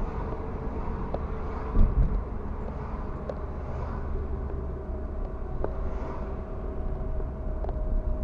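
Steady low rumble of a car driving, its engine and tyre noise heard from inside the cabin, with a single thump about two seconds in and a few faint ticks.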